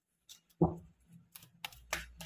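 Tarot cards being handled on a cloth-covered table: a thump about half a second in, then a run of quick, crisp clicks.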